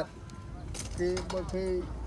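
A man speaking briefly from about a second in, after a few faint clicks.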